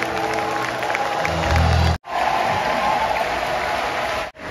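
Live concert music over a big sound system with crowd noise, a heavy bass coming in near the end of the first half. After an abrupt cut about halfway through, a large crowd cheers and applauds.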